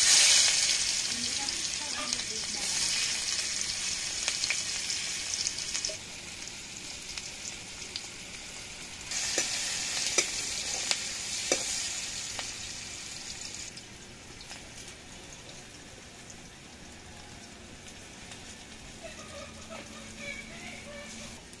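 Chopped onions hitting hot oil in a steel kadhai, sizzling loudly at once. The frying eases after a few seconds and swells again about nine seconds in as they are stirred, with a few clinks of the steel ladle, then settles to a softer sizzle.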